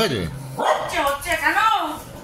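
A dog whining and grumbling in a wavering voice, its pitch rising and falling over about a second and a half.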